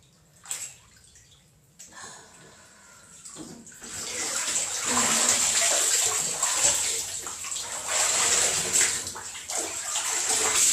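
Water in a bathtub: faint scattered sounds at first, then a loud, steady rush of moving water from about four seconds in.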